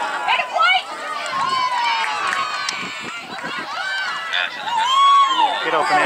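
Several voices shouting and calling out at once, overlapping, some high-pitched, with no clear words.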